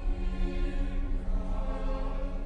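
Background music: a choir holding sustained chords over a low drone.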